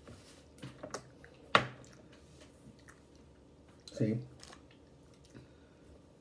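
A person chewing a dried chili mango snack, with a few sharp mouth clicks, the loudest about one and a half seconds in.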